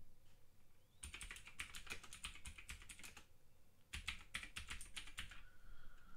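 Faint typing on a computer keyboard: two quick runs of keystrokes, with a short pause between them.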